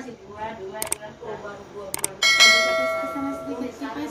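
Edited-in subscribe-button sound effect: two quick clicks, then a bell ding a little over two seconds in that rings out and fades over about a second and a half.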